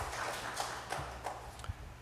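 Scattered clapping from a small congregation, irregular claps that thin out and fade near the end.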